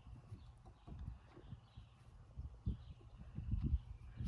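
A puppy scuffling on grass and tugging at a cloth toy: irregular soft thuds and rustles over a low wind rumble, busier near the end.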